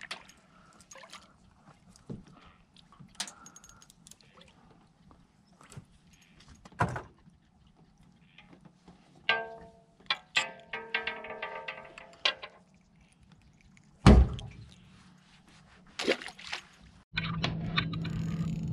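Small scattered clicks and knocks of a bluegill being held and unhooked in an aluminium boat, with one loud thump about fourteen seconds in. A steady low hum starts near the end.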